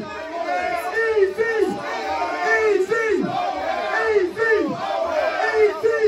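Club crowd shouting a chant together, the same short shout falling in pitch repeated over and over.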